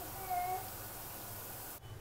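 A faint, short high-pitched call, rising slightly and then falling, shortly after the start, over a low steady background. The sound drops out near the end.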